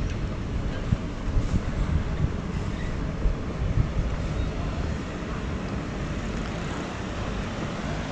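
Outdoor street background noise: a steady low rumble with a few soft knocks in the first four seconds.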